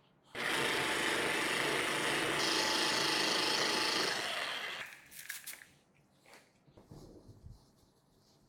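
Orbital polisher with a foam pad running steadily at low speed, working scratch-repair compound into car paint, and stopping a little under five seconds in. Faint rubbing of a microfiber towel wiping the panel follows.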